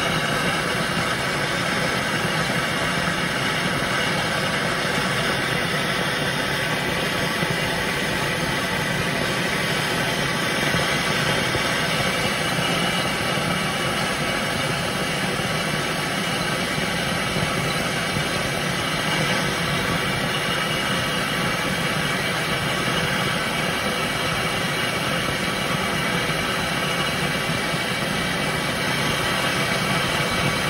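MAPP gas hand torch burning with a steady, unbroken hiss of flame, heating a seized brake-line fitting on a master cylinder to free it.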